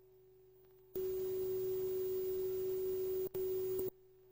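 A steady electronic tone with a loud burst of hiss that starts about a second in and lasts about three seconds, with a brief drop-out near the end, then cuts off. The tone grows much louder during the hiss. It is typical of a VCR's audio output at the start of tape playback in Hi-Fi mode.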